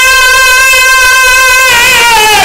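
A zakir's voice, amplified, holds one long high sung note of a majlis recitation; near the end the note dips and wavers.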